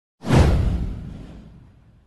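A single whoosh sound effect from an intro animation: a hissing rush over a deep low boom that swells in sharply about a quarter of a second in and fades away over about a second and a half.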